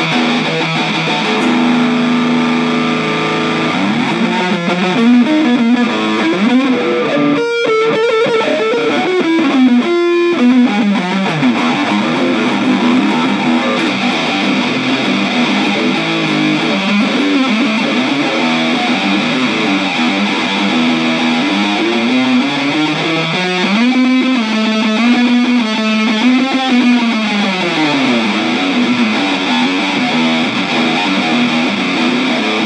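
Ibanez AS73 semi-hollow electric guitar played solo with a distorted tone, sustained notes ringing out. Notes slide and bend up and down in pitch a few seconds in and again later.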